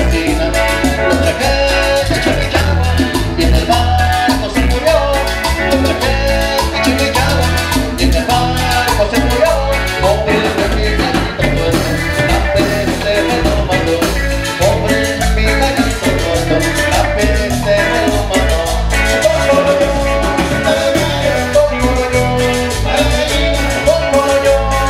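Live cumbia band playing: accordion, electric bass and guitar, congas and drum kit over a steady dance beat, without a break.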